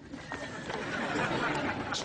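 Studio audience chatter: a murmur of many voices at once that swells over the first second and a half.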